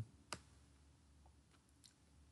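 Near silence broken by one sharp click about a third of a second in and two faint clicks near the end, the clicks of a computer mouse.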